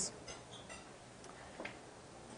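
A few faint, light clinks of cutlery and tableware over quiet room tone, with a slightly louder clink past the middle.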